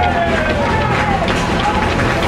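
Several voices shouting and cheering a goal just scored in a football match, over a steady low hum.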